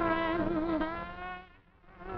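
A woman singing a long held note with vibrato over a dance band; the note ends about a second and a half in, there is a brief pause, and the band comes back in near the end.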